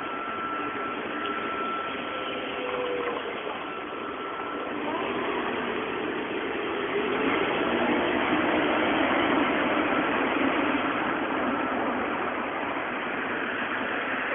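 Steady rushing outdoor street noise with no clear single source, getting louder for a few seconds past the middle.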